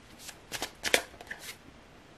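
Tarot cards handled as a card is drawn from the deck and laid out: a few short, crisp card sounds, the loudest about a second in.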